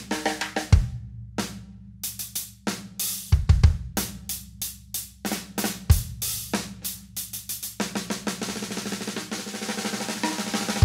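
Drum kit groove with a cloth rag draped over the snare drum, giving the snare a dry tone, over bass drum and cymbal strokes. The strokes come thicker and faster in the last couple of seconds.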